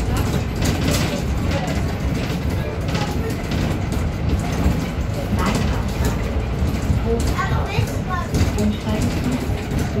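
Interior of a moving city bus: a steady low rumble of engine and road noise, with short clicks and rattles from the cabin fittings.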